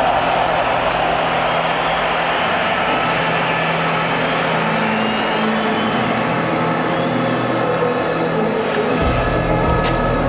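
Steady noise from a packed stadium crowd, mixed with music over the public-address system. About nine seconds in, a deep bass-heavy sound comes in abruptly.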